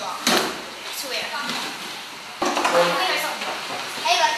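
Children's voices talking, with a sharp knock about a quarter second in.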